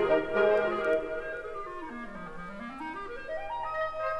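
Wind band music: a solo clarinet line steps down to a low note about two seconds in, then climbs back up.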